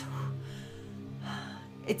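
Soft background music of steady held tones under a pause in speech, with a breath partway through; speech resumes just at the end.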